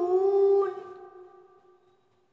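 A voice drawing out the word "June" as one long vowel that slides slightly in pitch, then fades away over about a second.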